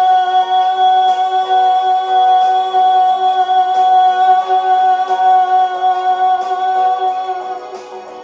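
A woman's singing voice holding one long, steady note for about eight seconds over backing music, letting it go near the end.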